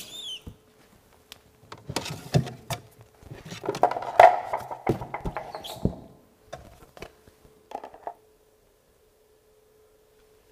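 Scattered knocks, clicks and rustling of wheel clamps and reference boards being handled and taken out of an ADAS calibration stand's storage cabinet, over a faint steady hum.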